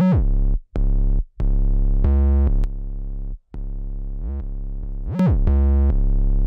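Distorted 808 bass playing a trap line on its own: about four long, loud notes with a deep low end, with a quick pitch slide up and back down at the start and again about five seconds in. The 808 is driven by a Decapitator for grit and run through a Waves L2 limiter, which makes it louder.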